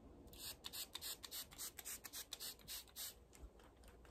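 Pump spray bottle of facial mist sprayed at the face: a rapid run of about a dozen short, high hissing spritzes over roughly three seconds, the first and last a little longer.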